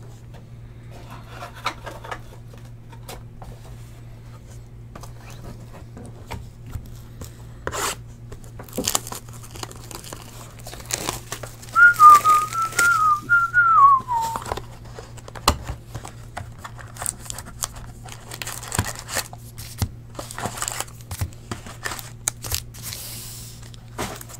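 Crinkling and tearing of a trading-card box's plastic wrap and cardboard as it is opened and its foil packs are handled. About halfway through, a person whistles a few notes that fall away at the end.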